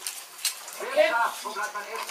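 A young child's voice speaking in short phrases.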